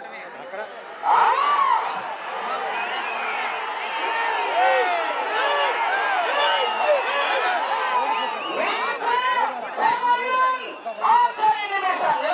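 A crowd of men shouting and calling over one another, the handlers and onlookers urging the bulls on as they haul the stone block. A brief lull comes first, then the shouting starts about a second in and carries on with loud peaks near the end.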